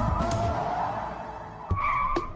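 Camaro's tires squealing on pavement as it pivots through a J-turn, a wavering squeal that fades after about a second and a half. Background music plays underneath.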